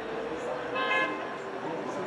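Town street ambience with a short car horn toot just under a second in, over a background of distant voices.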